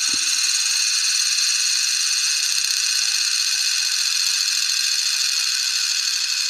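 Hurricane balls, two steel ball bearings glued together, spinning fast on a glass mirror: a steady, high-pitched whir.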